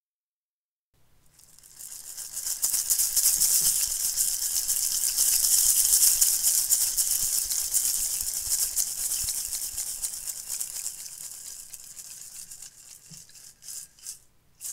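A percussion shaker sounds as a continuous rattle of many tiny clicks. It starts about a second in, swells over the next few seconds, peaks around the middle and then fades away near the end.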